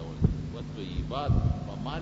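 A man's voice speaking in short phrases, with a steady low hum underneath.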